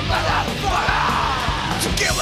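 Punk rock song playing, with a long wordless yell from the singer in the middle.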